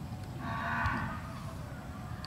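An animal's drawn-out call lasting about a second, starting about half a second in, over steady low background noise.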